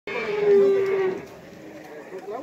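A cow mooing: one long call, lasting about a second, that fades out before the halfway point.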